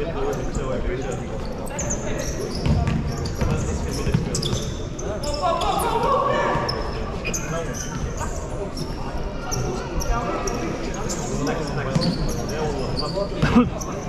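Futsal play on an indoor sports-hall court: repeated knocks of the ball being kicked and bouncing on the floor, echoing in the hall, with short high squeaks of shoes on the court and voices calling out. The sharpest knock, a hard kick, comes near the end.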